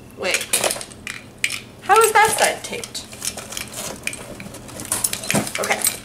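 A bunch of keys jingling while one key scrapes and saws at the packing tape on a cardboard box. The sound comes as irregular clicks and scratches.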